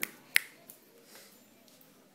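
A person snapping their fingers: two sharp snaps close together at the start, the second the loudest, with a faint third just after.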